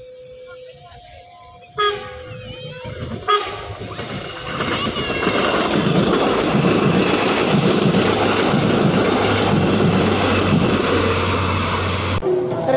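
Diesel multiple-unit passenger train passing close by. A loud rumble builds from about four seconds in, with a deep steady engine hum and regular wheel clacks over rail joints, about two a second.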